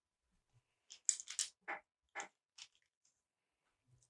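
Pastel pencils being handled at the drawing board: five or six short scraping, rustling sounds over about a second and a half, starting about a second in.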